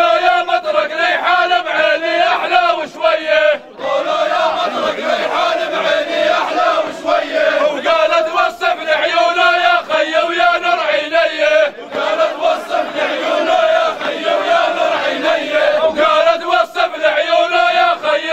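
A group of men chanting a folk song in unison at full voice, with two brief pauses between phrases.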